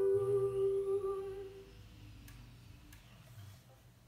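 A girl's voice holds the song's final note over the ukulele's last chord ringing out; both fade away about a second and a half in. Then a quiet room with two faint clicks.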